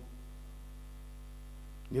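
Low, steady electrical mains hum, with a man's voice cutting back in at the very end.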